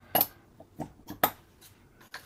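A few short, sharp clicks and taps from hands working with fly-tying tools and materials, with quiet between them.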